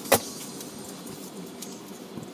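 A single sharp knock just after the start inside a car's cabin, followed by steady low background noise.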